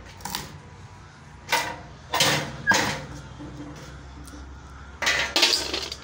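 Sharp metallic clacks and cracking from a hand-lever cashew deshelling machine as nuts are loaded into its blade holder and the blades are worked. The bursts are brief: one just after the start, a cluster between about one and a half and three seconds in, and a pair near the end.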